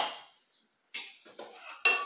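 Light clicks and knocks of the Thermomix bowl and lid being handled, a handful in the second half with the sharpest near the end, as the lid is about to be closed.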